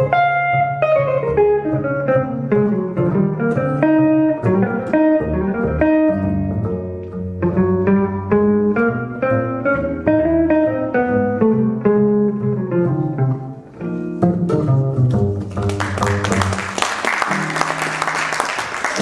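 Upright double bass and archtop jazz guitar playing together, a walking, plucked bass line under quick single-note guitar lines. Near the end audience applause breaks in while the two keep playing.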